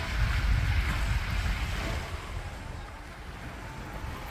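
Small sea waves washing onto a rocky, pebbly shore, with wind buffeting the microphone; the sound is strongest in the first two seconds and then eases off.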